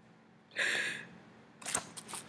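A sharp nasal sniff, about half a second long, from a person crying. Near the end it is followed by a run of light crackles like paper or tissue being handled.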